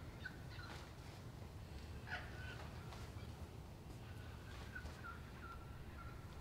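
Faint, distant birds calling, a few short calls over a low steady background hum, with a small cluster about two seconds in and another near the end.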